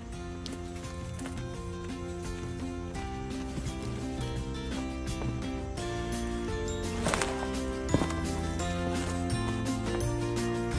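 Instrumental background music with sustained, stepwise-changing notes, with a couple of brief knocks about seven and eight seconds in.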